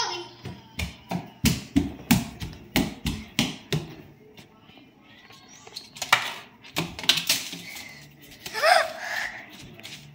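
A child's footsteps thumping quickly across a hardwood floor, about three steps a second for a few seconds. Then a few knocks and clatters, and a short child's vocal sound near the end.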